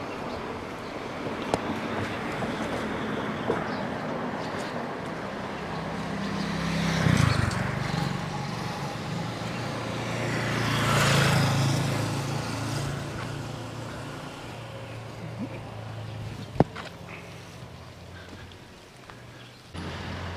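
Road traffic passing close by: two vehicles go past one after the other, each swelling up and fading away. The second, just past halfway, is a small motorcycle. A single sharp click comes near the end.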